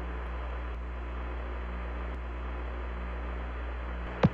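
Steady radio static hiss over a low hum: an open space-to-ground radio channel between transmissions in Apollo mission audio.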